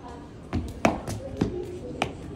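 Footsteps on a hard tiled floor: four irregular knocking steps, the loudest about a second in.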